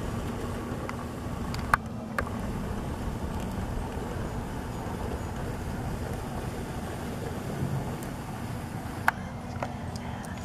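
Steady low rumble of distant road traffic, with a sharp click a couple of seconds in and another near the end.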